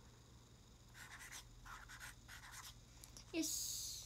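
Pen writing on a small paper notepad: short scratchy strokes in bursts, followed near the end by a sudden louder rustling burst of paper handling.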